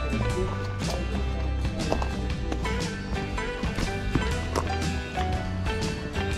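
Background music with sustained bass and melody notes over a steady run of percussive hits.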